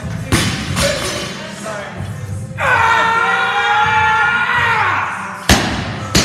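Loaded barbell with bumper plates dropped onto the lifting platform, landing with a loud thud near the end, over background music. A long held note sounds through the middle, and a couple of lighter knocks come just after the start.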